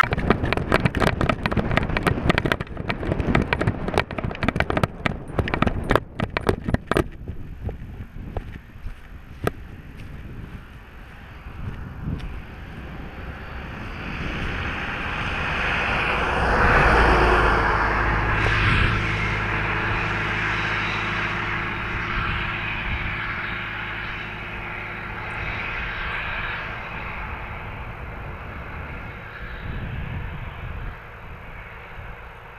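A vehicle driving along a road. For the first seven seconds there is a dense rattle of clicks and knocks. Then steady engine and road noise swells to its loudest about halfway through and carries on.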